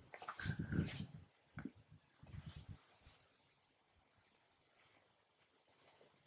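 Faint handling of a plastic water bottle and water filter: a few soft rustles and a click in the first three seconds.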